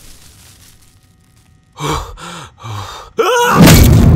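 A man's heavy gasping breaths after a near-silent start: three short, laboured breaths, then a sharp gasp that rises and falls in pitch. A loud, booming hit of film score comes in near the end.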